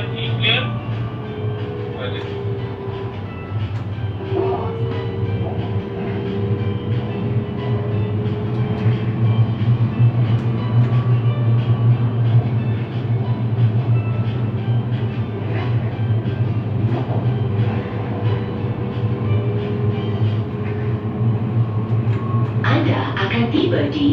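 Siemens Inspiro metro train running, heard from the driver's cab: a steady low rumble with a traction-motor whine that drifts slightly in pitch as the speed changes.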